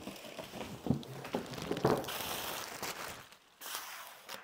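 Plastic wrapping crinkling and rustling as it is pulled off a robot vacuum's docking station, with a couple of knocks as it is handled.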